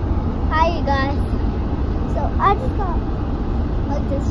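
Steady low rumble of a moving car, heard from inside the cabin, with a child's short vocal sounds twice, about half a second in and again around two and a half seconds in.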